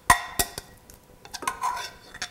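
A spoon knocking and scraping against a glass mixing bowl as chopped chicken is scraped out into a stock pot: a sharp clink just after the start, a second one soon after, each with a brief glassy ring, then softer scraping.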